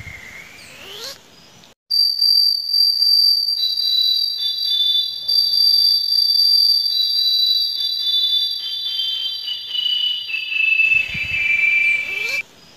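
Electronic sci-fi 'flying saucer' sound effect: a swooping tone that dips and rises in the first second, then from about two seconds in a loud chord of steady high whining tones, with further tones stepping in lower in pitch one after another.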